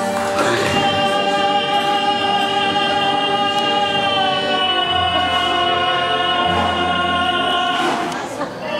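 Song with a singer holding one long note over musical accompaniment, the note stepping slightly lower about halfway and breaking off right at the end. It accompanies a Russian folk circle dance.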